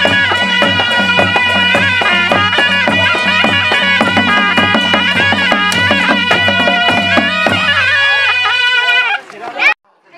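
Nepali panche baja band playing: two sanai (shehnai) double-reed pipes carry a reedy, ornamented melody over steady dholaki drum strokes. The drumming stops about three-quarters of the way through and the pipes trail off soon after, ending in a short rising squeal and an abrupt cut.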